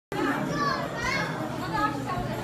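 Young children's voices mixed with people chattering, several voices overlapping in short, high-pitched bits of talk.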